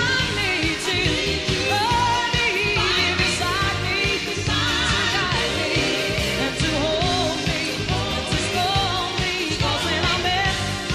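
Live band music with a steady beat: keyboards and drums under a woman's singing voice.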